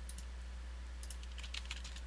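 A few computer keyboard keystrokes and mouse clicks: a couple right at the start, then a quick cluster from about a second in, over a steady low electrical hum.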